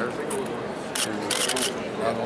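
Press cameras' shutters clicking: one click about a second in, then a quick run of several, over a murmur of voices.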